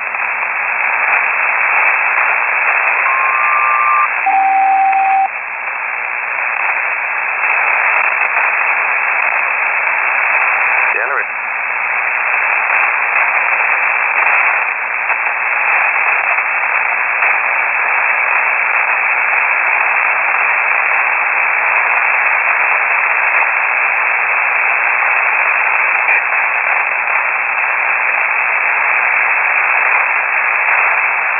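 Shortwave single-sideband receiver static, a steady hiss on an open aeronautical HF channel. About three seconds in a SELCAL selective-calling signal sounds: a pair of tones held for about a second, then a lower pair for about a second, sent by the ground station to ring up an aircraft.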